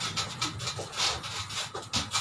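Scuffling and rubbing as a person slides his body along the floor under a bunk bed: a string of short, irregular scrapes.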